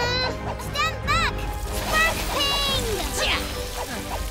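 Cartoon soundtrack: short, high, squeaky character vocalizations that rise and fall, over continuous background music, with a brief swish effect about three seconds in.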